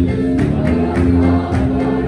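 Congregation singing a gospel hymn together over a steady percussion beat of about two strokes a second.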